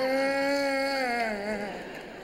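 A man wailing in exaggerated mock crying into a stage microphone: one long held cry that wavers and falls away after about a second and a half.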